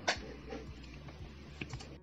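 Faint handling noises from a hand moving pieces of fried breaded cordon bleu on a serving platter: a sharp click just after the start, then a few soft taps.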